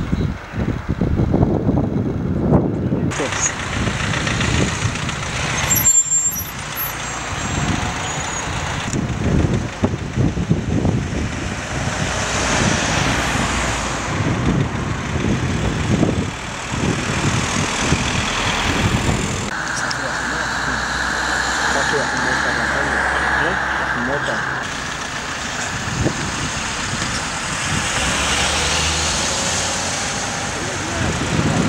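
Cars driving past on a road, with people talking nearby; the sound changes abruptly several times.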